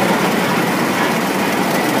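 Pioneer prairie tractor running as it drives past on steel wheels: a steady mechanical noise with no clear beat.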